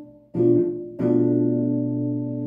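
Ibanez archtop guitar strumming a B minor seven flat five (B half-diminished) chord twice: a short strum about a third of a second in that is cut off quickly, then a second strum about a second in that is left to ring.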